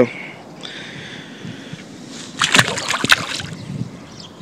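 A bass released back into the water, splashing as it goes in: a short cluster of splashes a little over two seconds in, lasting about a second.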